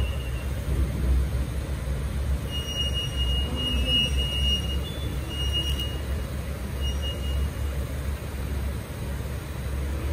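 Low, steady hum of a stationary Tobu 350-series electric train's onboard equipment, heard at an underground station platform. Short high-pitched squeals come and go over it, the longest about three seconds in.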